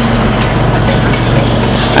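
Automated biochemistry analyser running: a loud, steady mechanical noise of its motors and moving parts over a low hum.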